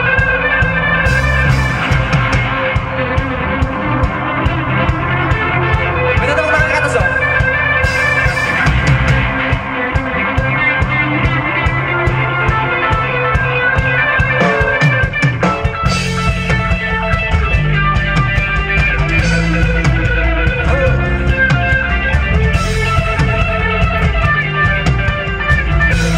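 Live rock band playing amplified through a stage PA: electric guitars, bass, keyboard and drums with a steady beat, the sound filling out in the low end about halfway through.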